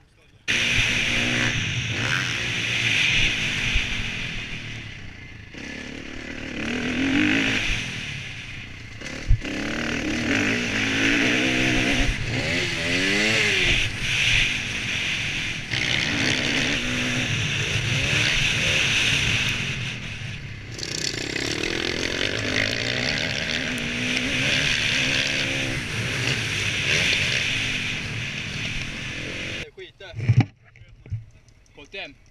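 Motocross dirt bike engine ridden hard on a dirt track, revs rising and falling through the gears. It starts abruptly, with a quick run of rapid up-and-down revving about midway.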